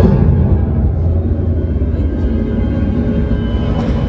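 Deep rumbling spaceship-thruster sound effect over steady background music, loudest for about the first two seconds and then easing off.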